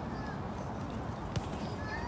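Low, rumbling wind noise on the microphone, with a single sharp knock about a second and a half in as a soccer ball is kicked on artificial turf.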